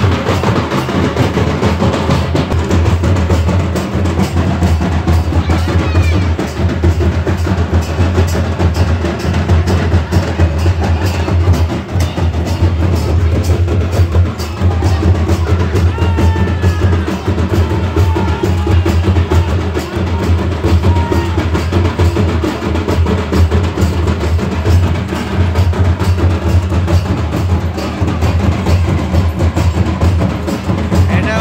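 Village drum band: several barrel drums and a large bowl-shaped kettle drum beaten together in a continuous dance rhythm, with a heavy low beat.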